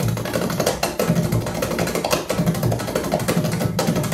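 Music with strong bass and drums playing through KEF Coda 9 speakers and an HSU Research VTF-2 subwoofer, driven by a Pioneer SX-434 vintage receiver. The bass pulses on a steady beat.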